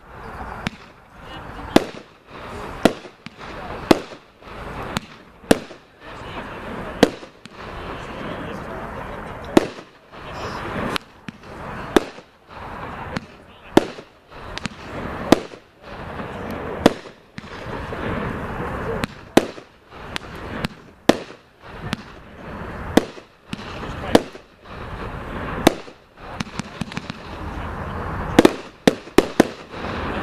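A 20-shot 500-gram consumer fireworks cake (Red Apple Fireworks 'Pagoda') firing shot after shot. Each shot is a sharp bang, about one a second, with a clustered run of quicker bangs near the end.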